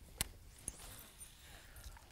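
Faint handling sounds of a baitcasting rod and reel during a cast: one sharp click shortly after the start, a smaller click about half a second later, then low background hiss.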